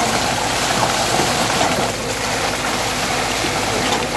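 A machine's engine running steadily as fresh concrete is poured into retaining-wall formwork, with a continuous rushing sound of the wet concrete flowing down into the forms.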